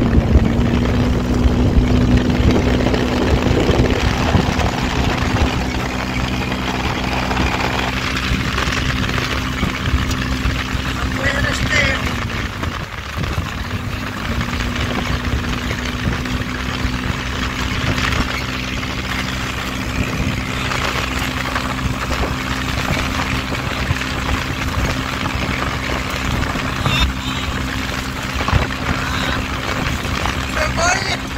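Dune buggy engine running at a steady speed under way on sand, heard from on board over rushing wind noise. The engine note eases off briefly about halfway through, then picks up again.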